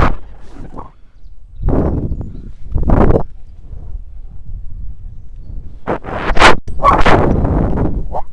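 Wind rushing over a helmet- or body-mounted action camera's microphone during a rope-jump freefall and swing. It comes in several loud, noisy surges with quieter gaps between them.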